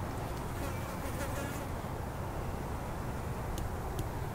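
A buzzing insect flying close by over a steady low outdoor rumble, its buzz wavering most in the first second or two.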